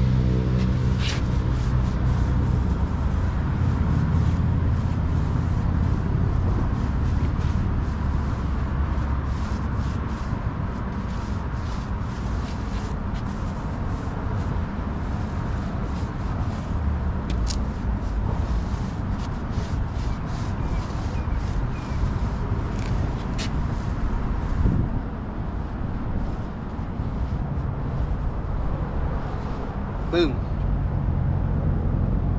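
A steady low rumble throughout, with faint brushing strokes of a tire-dressing applicator on a truck tire's rubber sidewall.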